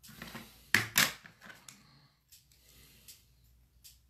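Hands handling felt cut-outs and craft tools on a table: a short rustle, then two sharp clicks close together about a second in, followed by a few faint ticks.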